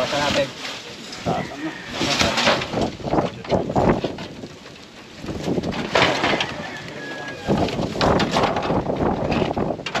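Rusty corrugated metal roofing sheets and old wooden planks being dragged and lifted aside by hand, giving irregular scrapes, knocks and metallic clatter, with a quieter lull midway.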